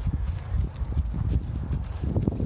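Wind buffeting the microphone as a heavy, uneven low rumble, with scattered light knocks through it.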